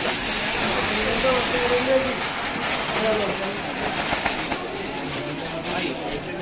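Rice grains pouring from a sack into a large cooking cauldron of liquid and ghee: a steady rushing hiss that stops sharply about four seconds in.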